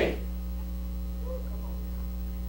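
Steady electrical mains hum: a low buzz with a stack of evenly spaced overtones, holding at one level.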